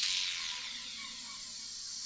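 Steady high-pitched hiss with faint gliding tones, the bass and beat of the electronic music dropped away.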